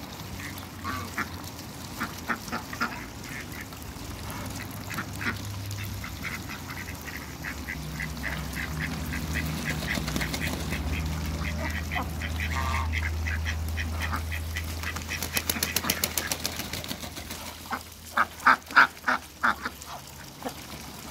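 Flock of domestic ducks quacking and chattering while feeding on wet grass, with a run of rapid clicking in the second half and a burst of loud repeated quacks near the end. A low steady hum sits underneath for much of the middle.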